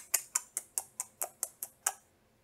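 A rapid run of evenly spaced sharp clicks, about five a second, each dying away quickly, stopping near the end.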